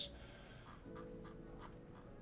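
A few soft clicks at a computer desk, over faint background music whose held notes come in about a second in.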